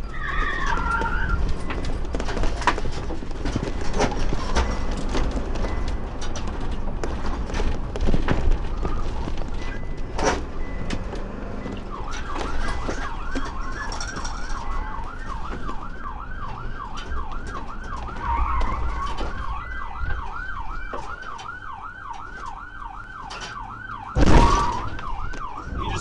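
Police car siren in a fast yelp, rising and falling about three times a second, starting about halfway in over the patrol car's road and engine noise. A single loud thump comes near the end.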